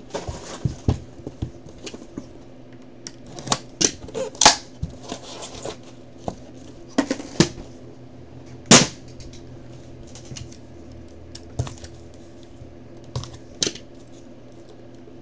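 Scattered sharp clicks and knocks from handling a 2019 National Treasures football box, a hard case with metal clasps and the white cardboard card box inside it. The sharpest click comes about nine seconds in, over a faint steady hum.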